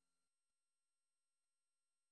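Near silence: the gap between two album tracks, with only the last faint trace of the previous song fading out at the very start.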